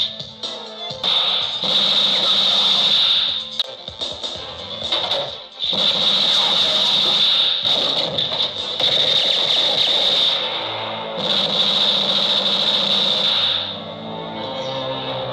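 Film soundtrack music with a high, steady tone that cuts out and comes back several times.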